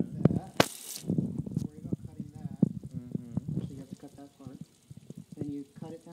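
Indistinct talking over a kitchen sink with the tap running, with a short, loud burst of rushing noise just under a second in and scattered small clicks of a knife working jackfruit pods.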